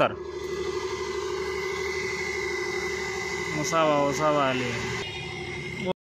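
A steady engine drone, with a person's voice speaking briefly about four seconds in.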